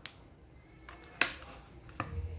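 Plastic hot glue gun being handled and put down: a faint click, then a sharper click about a second in, and another click at the end.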